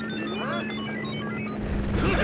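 Cartoon robot electronic beeping: a rapid run of short beeps hopping between pitches, with a brief chirp about half a second in, over a steady low hum.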